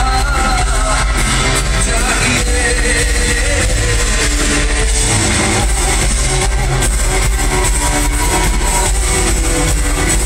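Loud live pop concert music: a male singer into a microphone over a full live band with drums and heavy bass, heard from the audience in a large hall.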